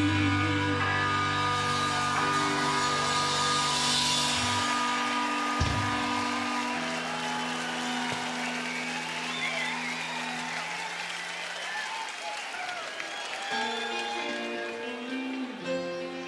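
Live rock band letting the closing chord of a song ring out and slowly fade, with the bass dropping out about four seconds in. A crowd is cheering, and near the end a few quiet guitar notes sound.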